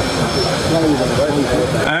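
A man speaking, heard over a steady rushing background noise.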